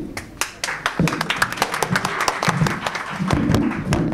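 A small crowd clapping by hand, rapid overlapping claps with voices underneath, which die down near the end.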